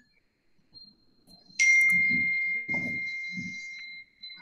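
A single bell-like chime, sounding suddenly about one and a half seconds in and ringing down slowly over the next two and a half seconds, with faint low sounds beneath it.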